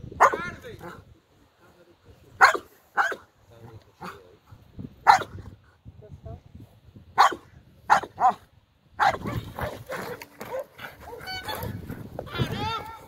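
A Malinois-type working dog barks at a decoy in a bite suit during protection training, in single sharp barks, about seven of them over the first eight seconds or so. Then comes a busier stretch of barking, with higher, whining yips near the end.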